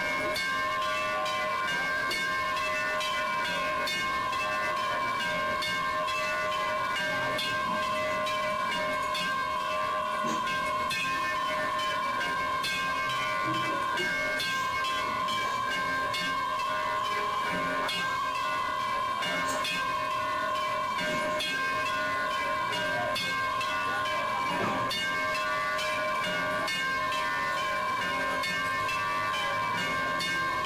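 A steady drone of several held, whistle-like tones over a hiss, unchanging in level, with faint scattered clicks.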